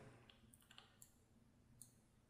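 Near silence: room tone with three faint clicks from a computer keyboard and mouse in use.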